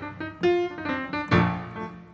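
Grand piano playing a song introduction: a few lighter notes and chords, then a loud chord about one and a half seconds in that rings on.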